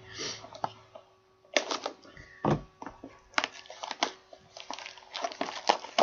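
Plastic wrapping on a hockey card pack being handled and torn open by hand: irregular crinkling and crackling, with scattered sharp clicks.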